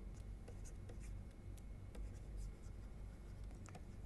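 Faint scattered taps and scratches of a stylus writing on a tablet, over a low steady hum.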